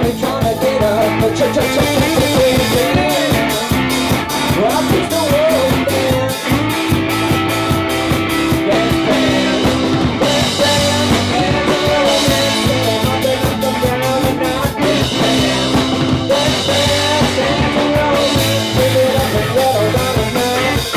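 Live indie rock band playing: a drum kit keeping a steady beat under electric guitars and bass, with a wavering lead line above.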